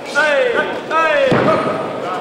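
Two loud, falling shouts from ringside during a kickboxing exchange, the second cut by a sharp thud a little past halfway, as a knee or kick lands.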